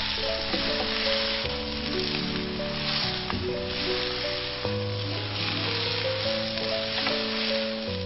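Fried potato strips in chili sauce sizzling as they are tossed and stir-fried in a wok, a dense, even hiss throughout. Slow background music plays over it.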